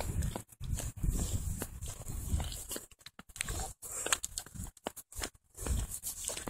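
Wind buffeting a phone's microphone in irregular low rumbling gusts, broken by a few abrupt near-silent gaps, with light clicks of handling or footsteps.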